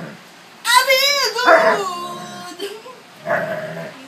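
A young Alaskan Malamute howling in drawn-out, wavering 'woo' calls. A high call that bends up and down comes about a second in and runs straight into a lower one, and a short, softer call follows past three seconds.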